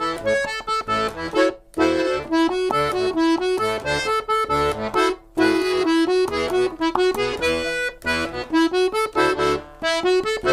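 Hohner Amica piano accordion playing a lively, rhythmic Brazilian-style tune: a right-hand keyboard melody over clipped left-hand bass and chord buttons, with brief breaks about two and five seconds in.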